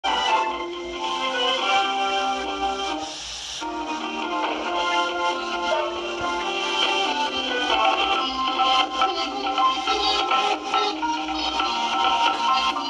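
Title music of a Marathi children's TV programme: a bright, steady melody of held notes, played back on a television, with a short swish about three seconds in.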